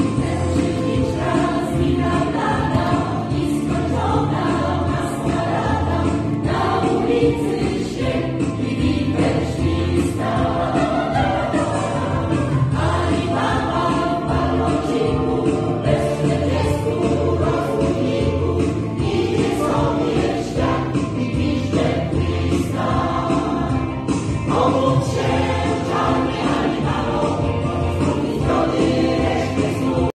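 A choir of mostly women's voices with a few men's, singing without a break.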